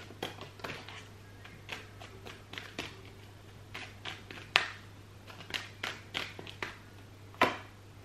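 A deck of tarot cards being shuffled by hand: an irregular run of soft card flicks and taps, with two louder snaps about four and a half seconds in and near the end.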